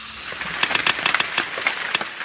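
Popcorn pouring out of a giant popcorn box onto a floor and table: a hiss that gives way, about half a second in, to a quick patter of many small, light impacts.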